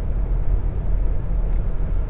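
Steady low rumble of road and engine noise inside a car's cabin at motorway speed.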